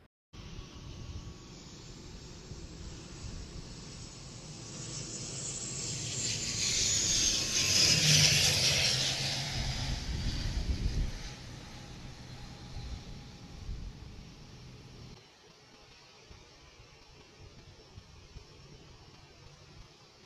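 ATR 72-600 turboprop flying past on landing. Its engine and propeller noise swells to its loudest about eight seconds in, with a whine that falls in pitch as it goes by, then fades away.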